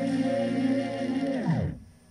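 A 45 rpm vinyl single playing a held chord of a pop ballad; about one and a half seconds in, the whole sound slows and slides sharply down in pitch and stops, as when a spinning record is halted, leaving faint record hiss.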